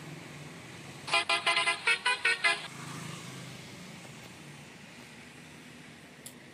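Truck horn blown in a quick run of about eight short toots at shifting pitches, lasting about a second and a half, over the low steady hum of a diesel lorry engine as the lorry pulls away.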